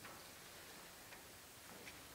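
Near silence: room tone with a few faint, irregularly spaced clicks.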